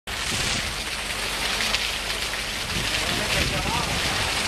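Fountain water splashing steadily: a jet spouting from a triceratops sculpture's mouth and falling into the planting below.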